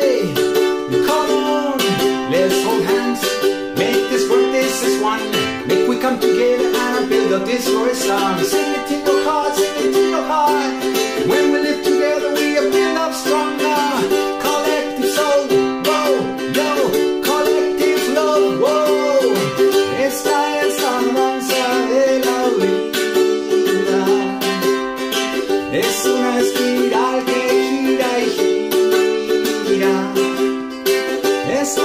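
A man singing while strumming a ukulele in a steady rhythm.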